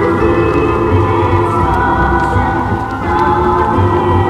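Song with layered, choir-like singing over sustained chords, edited to sound as if heard floating through space.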